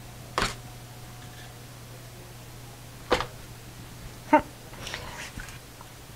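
Three short, sharp knocks as flipped paint cups are set down on the canvas and handled, the loudest about four seconds in, followed by light rustling as the canvas is lifted; a steady low hum runs underneath.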